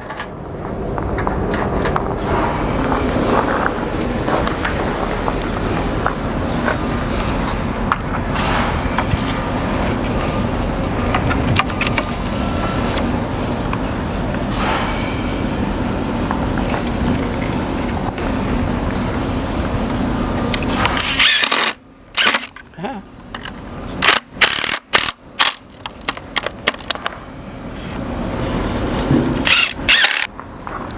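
A steady noisy rumble for about twenty seconds. Then, from about 22 seconds on, a string of short separate bursts from a Makita cordless impact driver driving screws into the oak cleat on the mantel's back.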